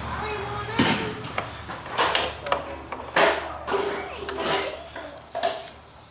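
Wrench clinking and knocking on a minibike's chain-tensioner bolt while the drive chain is tightened, as several separate short knocks spread over a few seconds.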